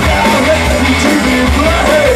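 Hard rock band playing live at full volume: electric guitars, bass guitar and drum kit.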